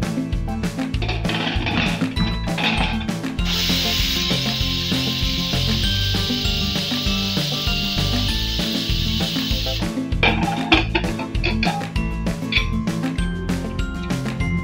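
Pressure cooker's weight valve whistling, a steady hiss of venting steam that starts about three and a half seconds in and cuts off suddenly some six seconds later: the cooker has come up to pressure and is letting off one of its whistles while the greens cook. Background music plays throughout.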